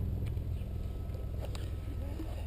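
A few faint ticks as the pump's hose fitting is screwed onto a Presta tyre valve, over a steady low background rumble.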